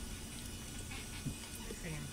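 A faint, low murmur of a voice, wavering in pitch near the end.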